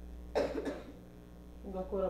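A person coughs once, a short harsh cough about a third of a second in.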